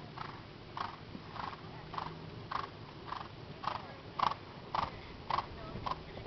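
A horse cantering on sand arena footing: a steady beat of its stride, a little under two a second, over a background hiss.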